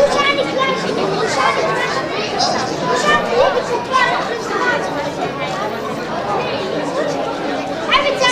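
Many children's voices chattering and calling over one another at once, a steady lively babble of overlapping voices.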